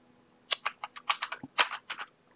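Computer keyboard being typed on, about a dozen keystrokes in quick succession starting about half a second in. The keystrokes are not registering because the malware has blocked typing at the lock screen.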